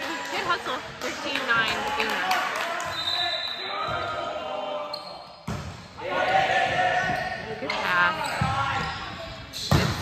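A volleyball bouncing and being struck on a hardwood gym floor, with the sharp knocks echoing in a large hall over the chatter and calls of players and spectators.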